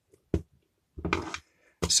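Handling noise on a transparent plastic RCD as a wire is fed into its terminal and a screwdriver is brought to the screw: one sharp click, then a brief scraping rustle about a second in.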